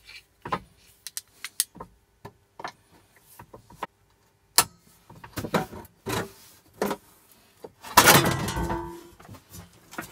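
Sharp, irregular knocks and taps of hand tools working at the riveted sheet-metal top of an old water boiler casing as it is prised loose. About eight seconds in comes a longer, louder scraping rattle with a slight ring, as the top comes free.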